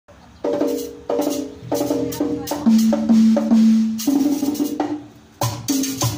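A live band playing a percussion-led opening of pitched drum hits in a steady rhythm, with a long held note in the middle. After a brief drop near the end the band comes back in, with a metal güiro scraping on the beat.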